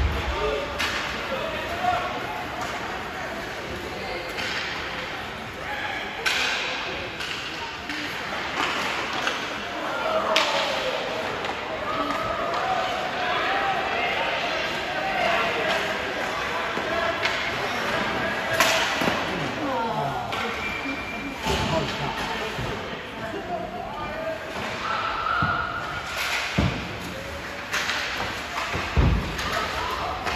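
Ice hockey play in an indoor rink: sharp clacks and thuds from sticks, puck and bodies against the boards, several times, over indistinct shouting voices and echoing rink noise.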